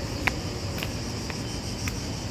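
Steady high-pitched insect buzzing, with light sharp ticks about twice a second, the loudest just after the start.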